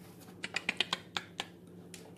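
A quick run of about ten light, sharp clicks in about a second, starting about half a second in, with one more near the end.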